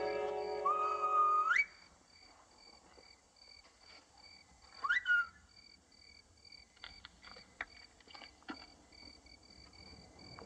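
Crickets chirping in a steady, even pulse, with two short rising whistles: the first holds a note and then sweeps up as orchestral music ends, and the second, louder, comes about five seconds in. A few faint clicks follow near the end.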